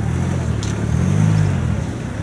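A motor vehicle's engine passing on the street, a low hum that rises in pitch about a second in and falls away again.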